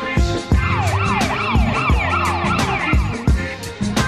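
Instrumental hip-hop background music with a steady drum beat. About half a second in, a siren-like wailing glide joins it, rising and falling about twice a second, and it fades out after about three seconds.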